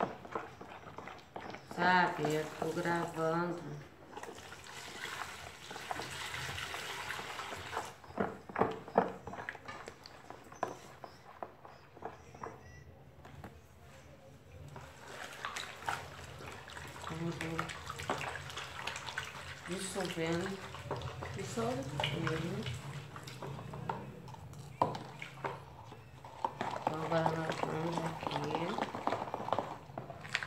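Partly gelled homemade liquid soap sloshing in a plastic basin as it is stirred with a spoon, in stretches of several seconds.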